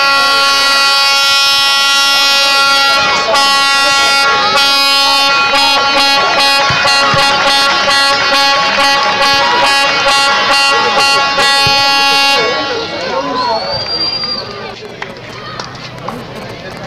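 An air horn held in one long steady blast over crowd shouting and chanting, with regular sharp hits. The horn cuts off abruptly about three-quarters of the way through, leaving crowd voices and a short high whistle.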